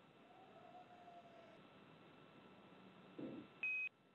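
Faint hiss of an open radio communication loop, a brief 'um' about three seconds in, then a single short electronic beep near the end, the loudest sound.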